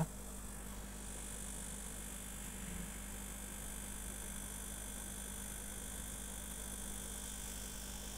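Steady low electrical hum with a faint even hiss, unchanging throughout.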